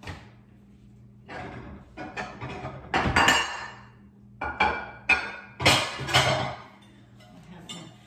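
Serving dishes, glass and ceramic, clinking and knocking together as they are taken out and handled: an irregular run of clatters, the loudest about three seconds in.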